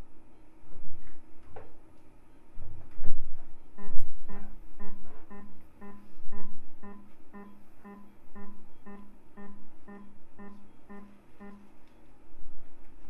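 A surgical energy device's generator sounding its activation tone: a steady-pitched beep repeating about twice a second, starting about four seconds in and stopping near the end. A few knocks come before it.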